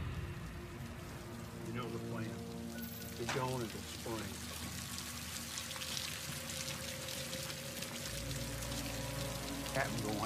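Steady rain falling over a held, droning film score, with a brief voice about three seconds in and a low hum joining the music near the end.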